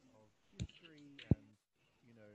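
A man's voice, faint, with two sharp clicks about two-thirds of a second apart, the second louder.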